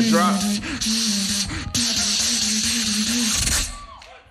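Beatboxer's vocal performance: one low hummed note held steady under a loud continuous hiss, cutting off suddenly near the end.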